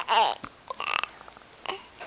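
An eight-week-old baby making a short, gliding coo right at the start, then a brief throaty grunt about a second in.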